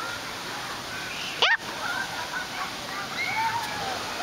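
Steady rush of water from a water park with faint distant voices of people, and one brief, sharp, high-pitched cry about one and a half seconds in.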